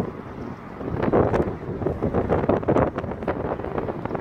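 Wind buffeting the microphone in uneven gusts, a rumbling rush that keeps swelling and dropping.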